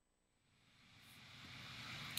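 Near silence: dead silence at first, then faint room hiss slowly swelling in over the second half.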